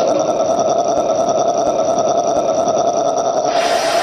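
A held, buzzing drone from the horror dance's recorded soundtrack, a sound effect between two songs. It is steady and rough-textured, and its upper part thickens about three and a half seconds in.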